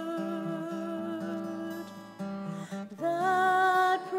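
A woman singing a slow hymn with her own acoustic guitar accompaniment, holding long, steady notes over plucked chords. The voice breaks off briefly a little after two seconds, and a new line starts around three seconds in.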